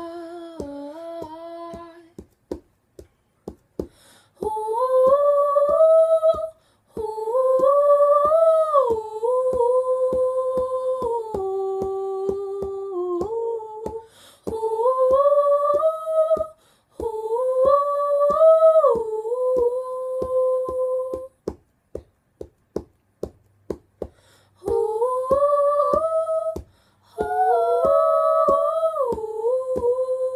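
Two women's voices singing a wordless melody together in harmony, with no instruments. Under the voices runs a steady tapping beat of about two taps a second, made by hand on a paperback book. The singing stops twice, once early on and once for a few seconds past the middle, leaving only the taps.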